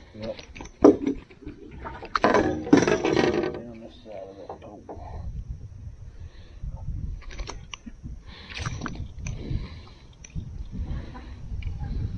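Handling noise as a just-caught crappie is unhooked by hand: scattered clicks and knocks, then a low rumbling of hands and gear against the boat and microphone. A short voice-like sound comes about two seconds in.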